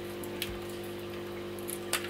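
Quiet room tone: a steady low hum, with a faint tick about half a second in.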